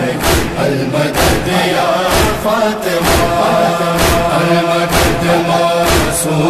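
Noha backing chorus: several voices chanting a drawn-out, wordless-sounding refrain, over a low thump about once a second that keeps the beat.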